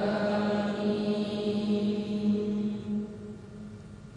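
A sustained chant-like drone at one steady pitch, rich in overtones, slowly fading away.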